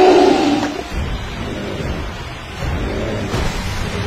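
A giant monster's roar in a film soundtrack, loudest over the first second and held on one pitch, followed by a low rumbling background.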